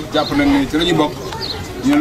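Men's voices chanting in long, drawn-out held notes with short breaks between phrases.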